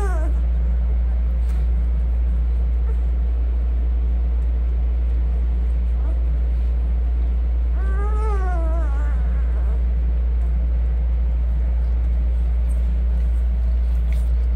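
A newborn puppy's high, wavering whine or squeal: the tail end of one right at the start and another, about a second long, around eight seconds in. Both come over a steady low hum.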